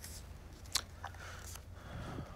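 Quiet room with a steady low hum and a few small clicks and rustles, the sharpest click about three-quarters of a second in.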